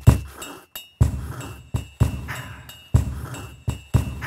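A looped beat built from recorded foot stamps on a wooden floor, picked up by a lavalier mic on the floor and processed with audio filters. A heavy thump lands about once a second, each led by a lighter knock, with a clinking ring layered over the top.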